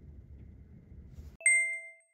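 Low, steady city rumble that cuts off abruptly near the end, followed at once by a single bright chime ding that rings out for about half a second.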